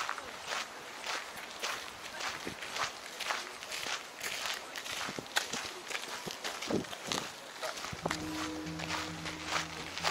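Footsteps crunching on a gravel path, about two steps a second. A low steady hum comes in near the end.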